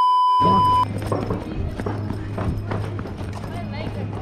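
A steady test-tone beep, a single pitch near 1 kHz, lasts under a second, then gives way to a steady low hum with scattered short knocks.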